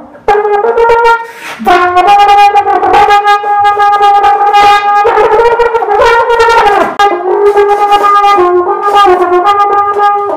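Trombone playing a phrase of changing notes, with a short break about a second and a half in, a long held note in the middle, and notes sliding down in pitch a little later.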